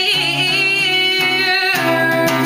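A woman singing long held notes, with strummed acoustic guitar accompaniment.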